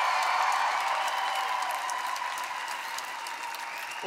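Large audience applauding, the applause slowly dying down.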